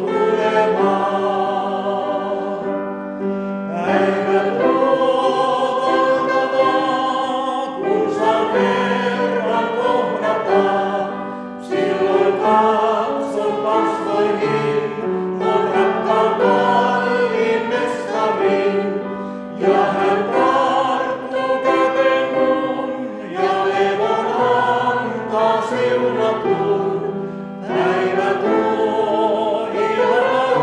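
Mixed vocal quartet of two men and two women singing a Christian song in four-part harmony. They sing in phrases of about four seconds, with brief breaks between them.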